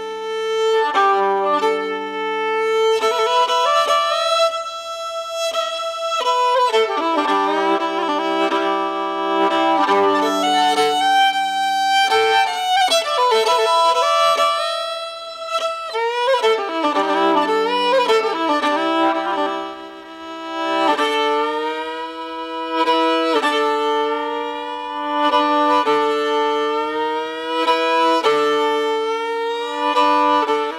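Instrumental opening of a song, led by a bowed fiddle playing a melody in held notes, with several notes sounding together.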